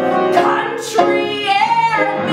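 A woman singing a musical-theatre song over instrumental accompaniment, holding a note near the end.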